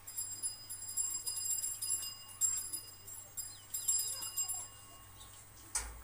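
Whiteboard marker squeaking against the board as a word and a question mark are written, a high-pitched squeal in several strokes. A short knock comes near the end.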